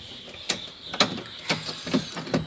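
Four sharp mechanical clicks about half a second apart from a Maruti Ertiga side door's exposed inner handle and latch mechanism being worked by hand with the trim panel off.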